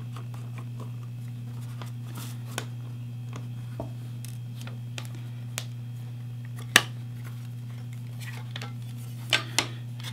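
Small clicks and taps of a screwdriver and a plastic external hard drive enclosure as the case is unscrewed and pulled apart. The loudest click comes about two-thirds through and two more come near the end, over a steady low hum.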